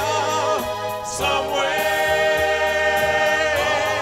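Five-man vocal group singing a doo-wop song in close harmony into handheld microphones. The chord shifts about a second in and is then held.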